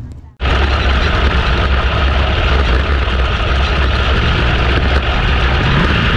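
410 sprint car V8 engine running loud and steady, heard from the onboard camera in the cockpit, cutting in suddenly after a brief drop-out about half a second in.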